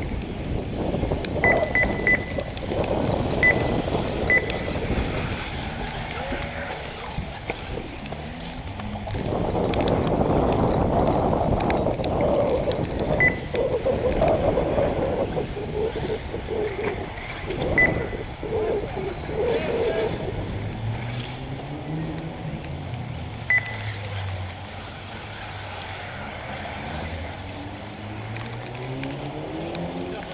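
Electric 1/8-scale RC off-road buggies racing, their motors whining up and down in pitch with the throttle, most clearly in the last third. A few short high beeps sound now and then over loud rough background noise.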